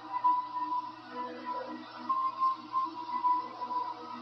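A horror film's closing score: long, held electronic tones that shift from note to note.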